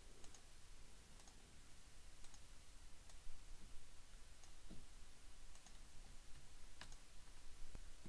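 Faint computer mouse clicks, single clicks spaced irregularly about a second apart, over a low steady room hiss.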